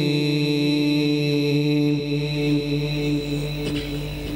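A man's voice reciting the Quran in the melodic tajweed style, holding one long note that stays steady for about two seconds, then wavers and fades near the end.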